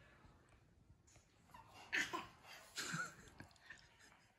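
A few faint, short vocal sounds from a young child, coming after about a second and a half of near silence.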